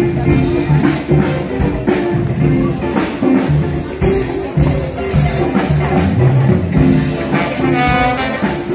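A live big band playing a jazz number: brass and saxophone section over a drum kit keeping a steady beat.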